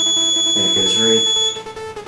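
Piezo buzzer of a model pedestrian crossing giving a steady high-pitched tone while the crossing signal is on, then cutting off suddenly about one and a half seconds in as the crossing phase ends.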